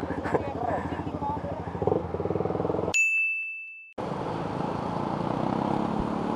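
A motorcycle engine idling steadily. About three seconds in, all other sound cuts out for a single bright ding that rings for about a second. Then a motorcycle riding in traffic, engine running under road noise.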